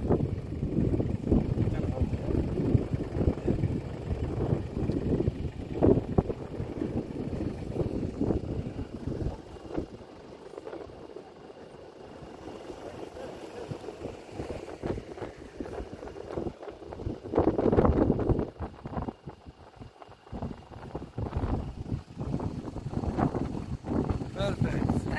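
Wind buffeting the microphone in uneven gusts, a heavy low rumble that is strongest for the first nine seconds, eases off, and rises again briefly near the two-thirds mark.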